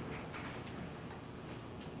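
Faint, irregular small clicks over quiet room tone.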